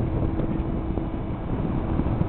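Wind buffeting the microphone over the low, steady rumble of a whale-watching boat's engine, with a faint steady hum.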